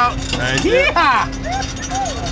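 Men's voices exclaiming without words, with one long rising-and-falling call about half a second in, over background music.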